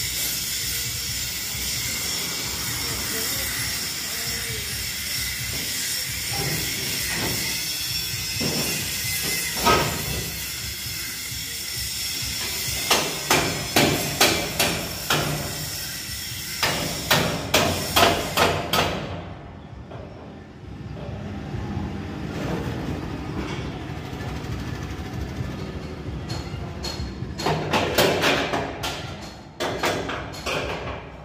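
A steady hiss runs until about two-thirds through, then cuts off suddenly. Over it, and again near the end, come runs of hammer blows, about two a second.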